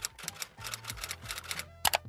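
Typewriter keystroke sound effect, a quick run of sharp clicks about seven a second as title text types out letter by letter, ending in a louder double click.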